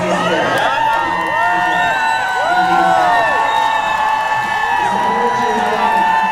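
Crowd of demonstrators cheering and whooping, many voices overlapping in rising and falling calls, with some longer held cries in the middle.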